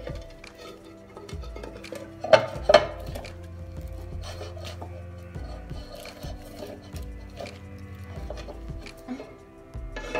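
Soft background music with steady held notes. About two and a half seconds in, two sharp clanks as the metal Bundt pan is handled.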